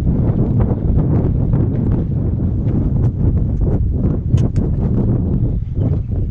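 Wind buffeting the microphone with a steady low rumble, broken by scattered light clicks and knocks.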